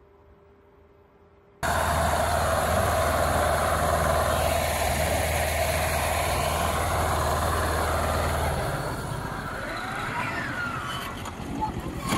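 Near silence for the first second and a half, then a vehicle engine running loudly with a steady low hum under a rushing noise. The low hum drops away about eight and a half seconds in, and voices come in near the end.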